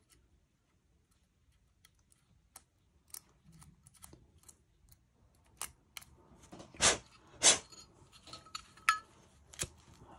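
Light metallic clicks and scrapes as a Zippo lighter is handled and put back together, then two loud sharp strikes about half a second apart as the lighter is opened and lit, followed by a few smaller clicks near the end.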